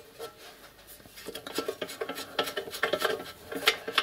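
Light metallic clinks and taps of a soldered brass model-locomotive pannier water tank and its small brass fittings being handled on a workbench, starting faint and coming thicker from about a second in.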